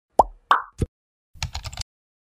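Intro-animation sound effects: three quick cartoon pops, the first dropping in pitch, then a short burst of rapid keyboard-typing clicks.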